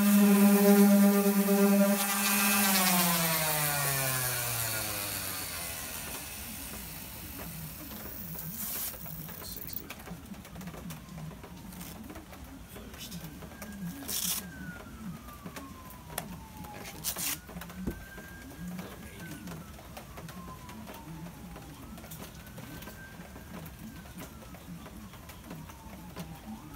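DeWalt random orbit sander running on a fibreglass-and-epoxy wing patch, then switched off, its whine falling steadily in pitch over a few seconds as it spins down. After that, a few sharp clicks and a faint siren rising and falling several times.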